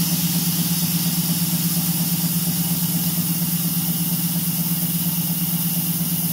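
MR-1 gantry CNC mill's spindle running a small two-flute end mill through aluminum, with mist coolant spraying: a steady hum under an even hiss, unchanging throughout.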